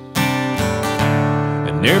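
Music: acoustic guitar strumming chords in a country song, a chord struck just after the start and ringing on under lighter strokes. The singer comes back in with a word at the very end.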